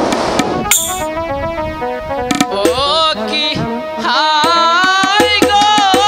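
Live folk-theatre music: a melody of held, stepped notes, joined about halfway through by a wavering lead line that glides in pitch over regular percussion strikes.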